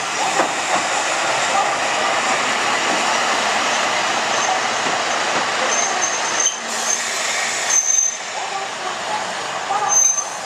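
KTR 700-series diesel railcar pulling in slowly, its engine and wheels making a steady rumble. Short, high brake squeals come in the second half as it draws to a stop.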